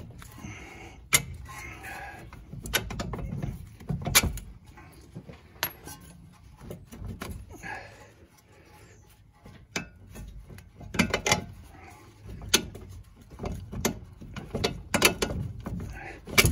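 Lower strut-to-knuckle bolts on a Toyota Sienna's front strut being wiggled and worked out by hand: irregular metallic clicks and knocks with scraping and handling noise.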